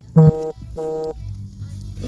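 Two short, steady musical tones of the same pitch, about half a second apart: a two-note sound effect. A faint low hum follows.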